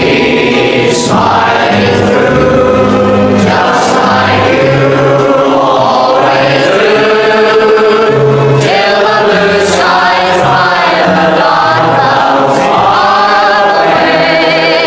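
Background music: voices singing a slow song in choir-like harmony, with long held notes.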